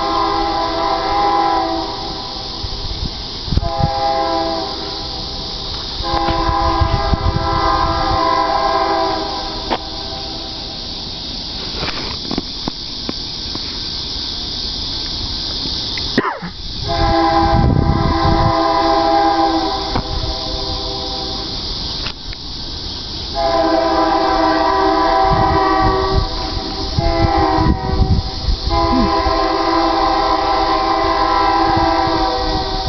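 Approaching diesel freight locomotives sounding their multi-note air horn in repeated blasts. There are three in the first ten seconds, then a pause of several seconds, then another series of longer blasts. A steady low rumble of the oncoming train runs underneath.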